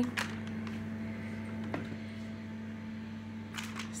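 A steady low hum with a few light clicks, about three over four seconds.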